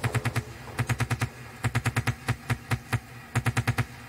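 Hard trance mix in a breakdown: the kick and bass drop out, leaving quick stuttering runs of sharp percussive hits, about eight to ten a second, in short groups with brief gaps between them.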